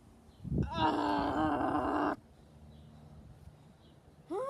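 A person's voice making a wordless groaning cry, about a second and a half long, which cuts off suddenly. It is the voicing of a plush toy in a play fight.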